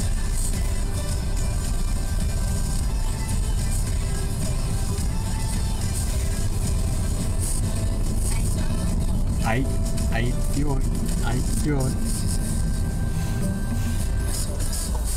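Steady low rumble of a car's engine and tyres heard from inside the moving car, with faint music and a few spoken words near the end.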